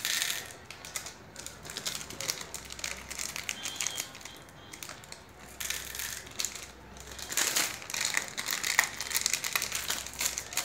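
Plastic Cadbury Gems sweet wrappers crinkling and crackling irregularly as they are handled and opened, loudest just at the start and again in the last few seconds.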